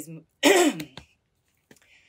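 A woman clearing her throat once, a short loud rasp that falls in pitch, about half a second in.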